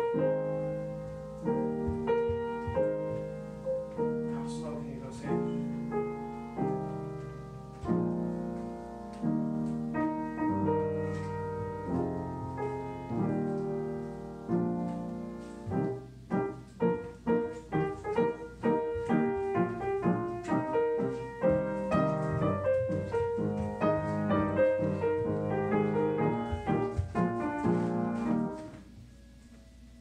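Upright piano played live: held chords changing about once a second through the first half, then quicker, shorter repeated notes from about halfway, breaking off shortly before the end.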